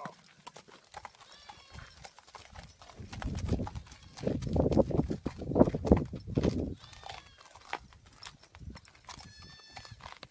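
A horse's hooves thudding on sandy ground as it is led along, a run of knocks that is heaviest from about three to seven seconds in. A few faint high-pitched calls come and go.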